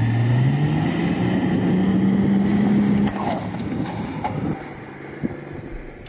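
A 4x4's engine revving: the revs climb over about a second, hold high, then ease off about three seconds in.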